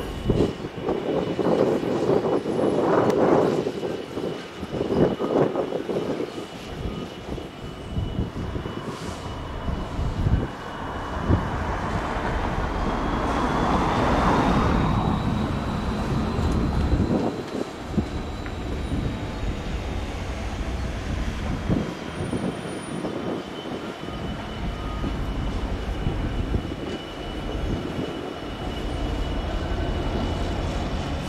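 Class 66 diesel freight locomotive's engine running with a steady low rumble, louder in uneven surges over the first few seconds. A thin high squeal runs throughout, rising in pitch around the middle and settling back down later.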